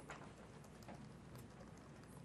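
Faint typing on a laptop keyboard: a few scattered, soft key clicks over low room hum.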